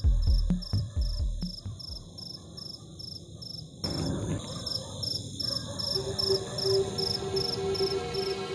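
Film soundtrack: an electronic music track's deep bass beat fades out over the first two seconds, under evenly spaced cricket chirps, about two or three a second, that run on throughout. A sustained low musical tone comes in about six seconds in.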